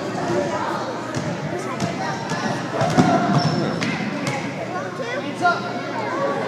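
Basketball bouncing on a hardwood gym floor, with a sharp thump about three seconds in and another near the end, over the chatter of voices in an echoing gymnasium.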